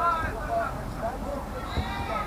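Voices shouting and calling out across a football pitch, with a loud call right at the start and another near the end, over a steady low rumble.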